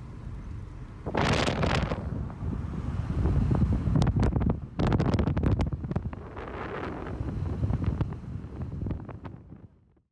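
Wind buffeting the microphone in loud gusts, from a car window, over the steady low rumble of a car driving along. It fades out near the end.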